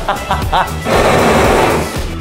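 Handheld gas torch flame blowing: a loud hiss lasting about a second that cuts off suddenly near the end, over background music.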